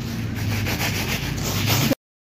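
Hands rubbing and sifting uncooked rice grains in a woven bamboo winnowing tray, a quick run of repeated scratchy strokes over a low steady hum. The sound cuts off suddenly near the end.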